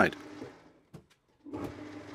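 Metal lathe running, turning a workpiece under a facing cut. The sound fades to near silence for about half a second in the middle, then comes back as a steady hum.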